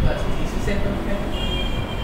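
A man's voice says a single number, over a steady low rumble of background noise; a few faint high tones sound in the second half.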